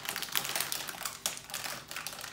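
Foil and plastic toy wrappers being handled and unwrapped, crinkling with a quick, irregular run of small crackles and clicks.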